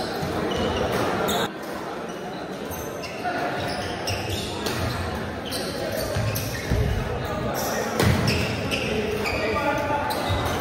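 Badminton rally: several sharp racket hits on the shuttlecock, with the players' footfalls on the court, ringing in a large indoor hall over background chatter.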